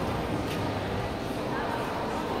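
Busy indoor shopping-mall ambience: indistinct voices of many shoppers over a steady background noise, with no single sound standing out.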